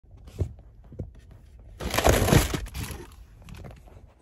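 Close-up handling noise: two soft bumps, then a loud burst of rustling about two seconds in as the sleeping bag and camera are moved against the microphone, fading out after a second.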